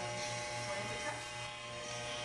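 Electric hair clippers buzzing steadily as they shave hair off close to the scalp around the ear.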